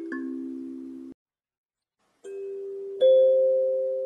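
Kalimba tines plucked by the thumbs, each note ringing and slowly fading, playing a simple melody. The sound cuts off abruptly about a second in, and after a second of silence the notes start again, with a loud pluck about three seconds in.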